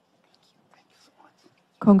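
Near silence with a few faint soft rustles and murmurs. Near the end, a woman's voice starts speaking loudly into a microphone.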